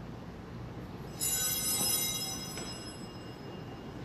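Altar bell rung about a second in, its high metallic ring fading away over about two seconds.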